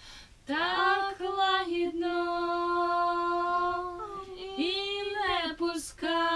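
A wordless voice, with nothing playing along, holds long steady notes and slides up and down in pitch between them. There is a short rising slide near the start and several dipping slides around two-thirds of the way through.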